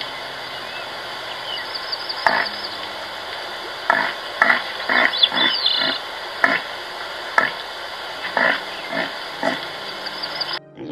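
A deer giving a series of short, abrupt grunting calls, about eleven at irregular intervals, over a steady background hiss. Faint high bird chirps come about one and a half and five seconds in.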